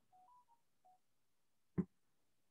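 Four faint, short electronic beeps at a few different pitches in quick succession, then a brief blip of sound near the end.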